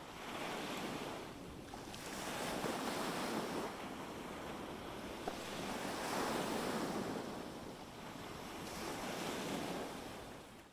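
Ocean surf washing up on a sandy beach, waves breaking and drawing back in slow swells that rise and fall every few seconds.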